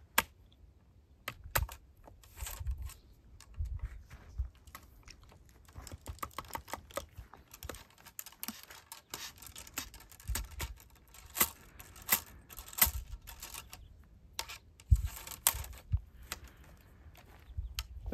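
Irregular small clicks, taps and scrapes from handling a .45 caliber flintlock muzzle-loading rifle held upright for reloading, with one sharp click right at the start.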